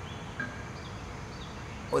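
Outdoor background noise holding steady, with two faint short bird chirps, and a man's voice starting again at the very end.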